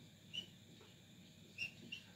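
Felt-tip whiteboard marker squeaking faintly on the board as a word is written: three short, high squeaks over low room tone.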